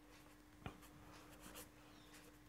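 Faint scratchy strokes of a marker pen writing words on paper, with one small tap about two-thirds of a second in, over a low steady electrical hum.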